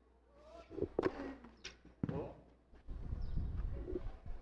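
Tennis rally: racquet strikes on the ball about a second in and again about two seconds in, with a short vocal sound around the first shot. A low rumbling noise follows near the end.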